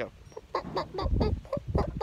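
A person imitating a rooster's tidbitting food call, the call a rooster makes to draw hens to food: a rapid run of short clucks, about six a second. A couple of low thumps on the microphone come in partway through.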